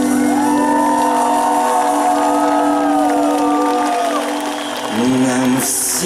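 Live rock band holding a sustained chord, with a crowd whooping and cheering over it; the band moves to new notes about five seconds in, and a bright crash comes just before the end.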